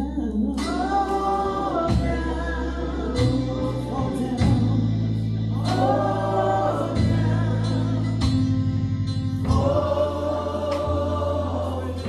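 Gospel singing with electric keyboard accompaniment: long held bass notes under three sung phrases, with scattered drum and cymbal hits.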